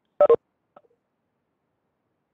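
A short, loud electronic beep of two quick pulses about a quarter second in.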